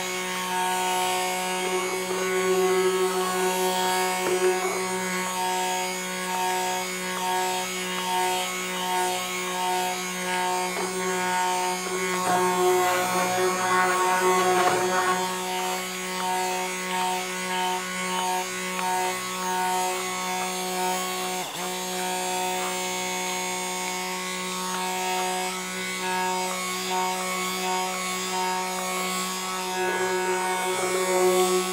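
Handheld electric stick blender running steadily in a bucket of raw lye soap batter, a constant motor hum while it churns the mixture. It gets a little louder about halfway through.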